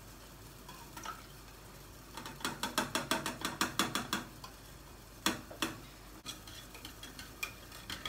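A spoon clinking rapidly against a small metal tin while candle wax melts in it over simmering water, about seven light clicks a second for some two seconds, followed by two sharper knocks a fraction of a second apart.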